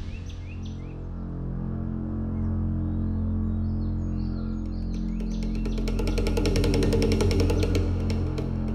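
Dramatic background score: a sustained low drone with faint chirps over it early on. About five seconds in, a fast, even ticking percussion builds in and carries on.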